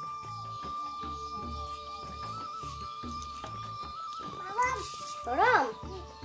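Background music with a steady beat and a long held melody line. Near the end come two short calls that rise and fall in pitch, the second one the loudest.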